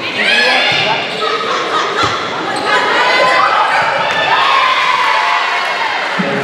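Volleyball rally in a gymnasium hall: players and spectators shouting and cheering throughout, with a sharp smack of the ball being struck about two seconds in.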